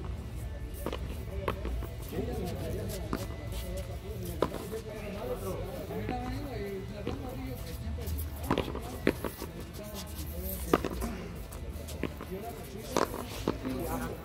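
Frontón ball play: sharp smacks every second or two as the ball is struck by hand and hits the concrete wall. Voices and music run underneath.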